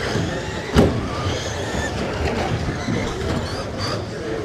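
Electric radio-controlled stock-class trucks racing on an indoor carpet track: motor whines rising and falling over a steady mix of running noise, with one loud thump about a second in.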